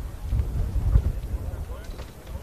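Wind buffeting an outdoor microphone, a fluctuating low rumble, with faint distant voices.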